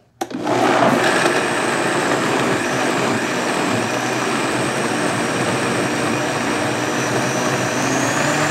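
Vitamix blender switching on just after the start and running steadily at speed with a high whine, puréeing chunky cooked vegetables into smooth soup.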